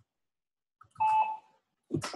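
A short electronic beep, a single steady two-tone alert about a second in, lasting under half a second.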